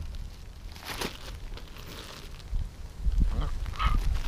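Plastic bags of fish bait rustling and crinkling as they are handled, with a low rumble that is loudest in the last second.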